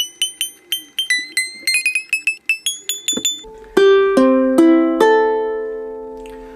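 Enya EUT-MAD solid mahogany tenor ukulele being tuned. A string is plucked quickly, about four times a second, and its pitch steps upward as the tuning gear is turned. About three and a half seconds in, the open strings are plucked one after another and left to ring, fading slowly.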